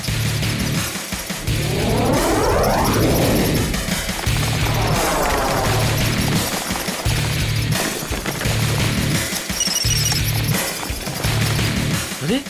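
Background music for a cartoon scene, with a pulsing low beat, and two long swooping sweeps around two and five seconds in.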